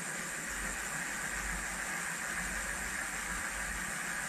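A steady, even hiss with a low rumble beneath it, unchanging throughout.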